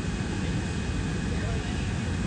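Steady low rumble with hiss above it, unchanging throughout, with indistinct voices possibly buried in it.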